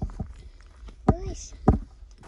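Footsteps on a dry track of leaf litter and fallen twigs, a few separate heavy steps. A short voice sound comes about a second in.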